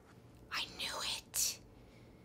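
A person whispering softly, a few breathy words about half a second to a second and a half in.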